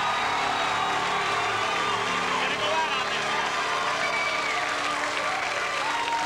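Studio audience laughing, cheering and applauding at the parody song's punchline, with a held chord from the band underneath for the first few seconds.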